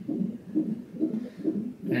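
Electronic fetal heart rate monitor playing the unborn baby's heartbeat through its speaker: a steady rhythmic pulse, about two and a half beats a second.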